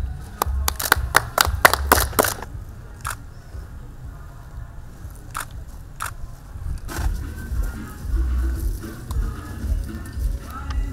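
Music with a low, pulsing beat, and over it a quick run of about eight sharp clicks in the first two and a half seconds, then a few single clicks. The clicks are press photographers' camera shutters firing.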